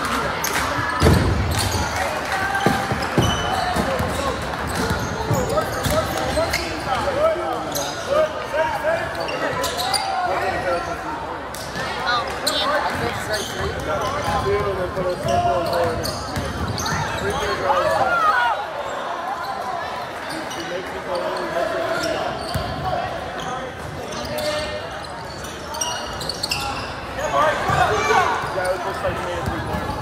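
Basketball game in a gymnasium: a basketball bouncing on the hardwood court, with indistinct voices of players and spectators throughout.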